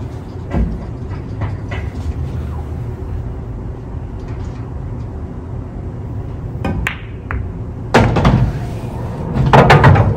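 Billiard balls on a pool table: the sharp click of the cue striking the cue ball and the cue ball hitting the 8 ball, quick clicks in a row about seven seconds in, then a louder noisy knock about a second later as the ball drops into the pocket. Near the end comes a loud clatter as the cue is laid down on the table.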